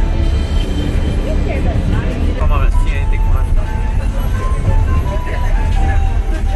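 Passenger train running, heard from inside the carriage: a steady low rumble, with passengers talking and music playing over it.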